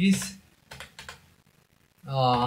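A few light clicks of computer keyboard keystrokes, coming about a second in as code is typed.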